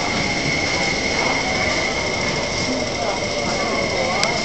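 MTR SP1900 electric train running alongside the platform as it arrives: a steady rush of wheels on rail with a constant high-pitched whine over it.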